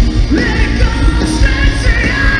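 Rock band playing live at full volume: electric guitars, bass and drums under a lead singer who slides up into a high held note about half a second in.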